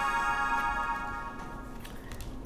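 Chime-like transition sound effect ringing out: a cluster of bright tones that has just slid down in pitch holds steady and slowly fades away.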